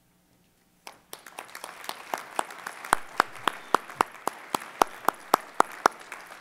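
Audience applause starting about a second in, with one pair of hands close to the microphone clapping loudly at about four claps a second over the crowd's clapping.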